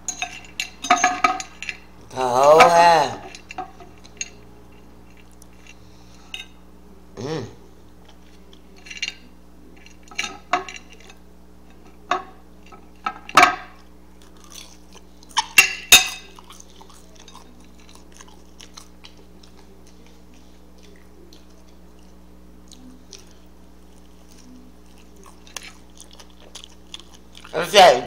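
Close-up chewing and mouth smacks of someone eating a burger, with scattered sharp clicks through the first half and a wavering hummed "mmm" of enjoyment about two seconds in. It goes quieter in the second half, with a faint steady low hum underneath.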